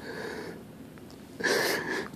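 A wheezing breath with a thin whistle in it: a faint one at the start and a louder, longer one about one and a half seconds in.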